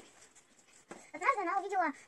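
A child speaking a few words in the second half, after a quiet pause of about a second.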